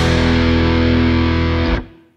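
Rock band's closing chord, with distorted electric guitar and bass held and ringing. It is cut off sharply near the end, finishing the song.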